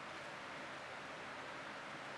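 Steady, faint background hiss of room tone, with no distinct sound in it.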